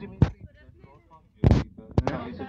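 Two sharp knocks, a small one about a quarter second in and a louder, heavier one about a second and a half in, with faint voices between them.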